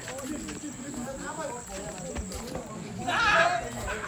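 Voices on the original location recording: a man talking and giving instructions, which the recogniser did not catch as words, with a louder call about three seconds in, over a steady high-pitched tone.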